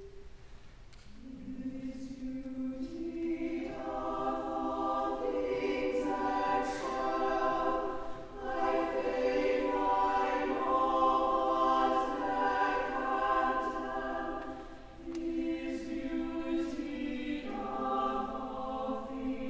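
A choir singing in slow phrases of long-held chords, swelling after the first couple of seconds and breaking briefly about eight and fifteen seconds in.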